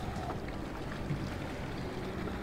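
Steady low wind and water noise around a small fishing boat on open water, with no distinct strikes or tones.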